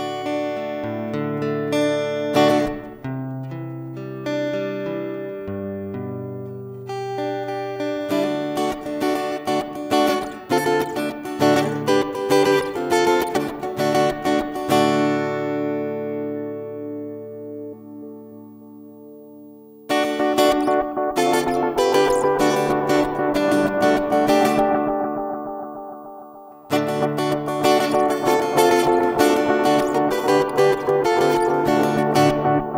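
Acoustic guitar played through a NUX Stageman II AC-60 acoustic amplifier. It opens with picked notes and chords, then switches to fast strumming about eight seconds in. A chord is left ringing down for a few seconds, and the strumming resumes twice.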